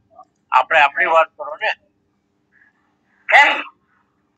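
Speech only: a person talking in a short phrase, then a pause of more than a second, then a brief word near the end.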